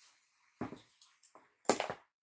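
Glass wine bottle being set down on a glass tray: two loud clunks about a second apart, with a lighter knock between them.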